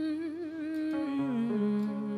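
A voice humming a slow wordless melody with vibrato, stepping down in pitch about halfway through, over sustained chords played on a Yamaha electronic keyboard.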